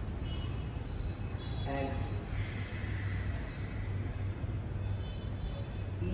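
Steady low room hum, with a brief faint voice a little under two seconds in followed by a sharp click.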